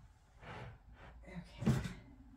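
Handling noise as a metal standing-desk converter is turned over on a wooden desk: a short noisy rush about half a second in and a few light knocks, then a woman says "all right, okay" near the end.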